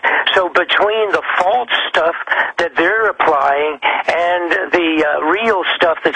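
Speech only: a man talking without pause on a radio broadcast.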